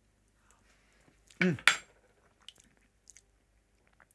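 A short 'mm' from a man, followed almost at once by a single sharp clink of a metal bar spoon against a glass champagne flute, then a few faint light clicks.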